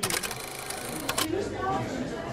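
Rapid clicking rattle like a film projector running, a video-editor transition sound effect, lasting about a second and a quarter before it cuts off suddenly. Background voices run underneath.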